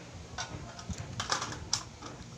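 Wooden pencils being handled, giving a few light clicks as they knock against each other and the table.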